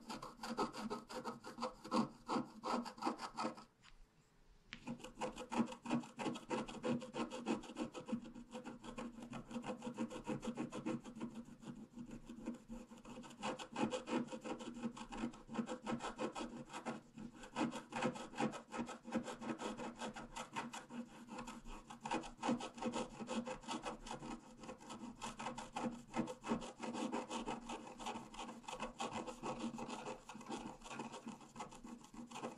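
Wooden stylus scratching the black coating off a scratch-art sheet in quick, short back-and-forth strokes, with a brief pause about four seconds in.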